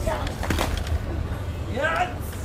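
Bokator martial artists sparring: a few sharp impact sounds of strikes around the middle, then a short shout near the end.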